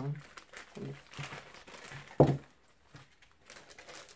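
Thin plastic toy bag crinkling and being torn open by hand, in irregular crackles, with a short spoken word about two seconds in.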